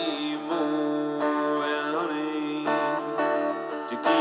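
Acoustic guitar played in a solo live song, with the singer's voice holding sustained notes without clear words over the chords.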